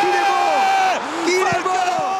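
Spanish-language TV football commentator's long drawn-out goal shout, held on one high note. It breaks off about a second in and is taken up again.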